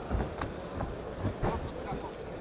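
Several sharp thuds of gloved punches landing in a close-range kickboxing exchange, over the steady noise of an arena crowd with voices shouting.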